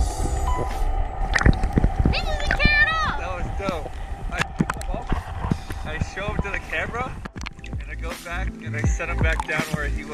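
Background music with held notes and a gliding vocal-like line over it.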